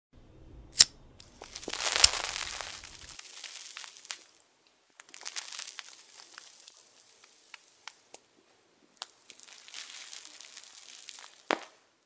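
Sound effect of a burning joint: a sharp click about a second in, then spells of hissing with scattered crackles, ending in one sharp pop near the end.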